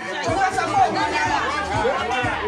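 Several people talking at once in lively, overlapping chatter, with short low thuds underneath.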